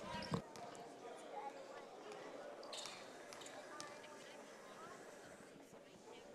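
Faint gymnasium ambience of low crowd talk, with a few basketball bounces on the hardwood court.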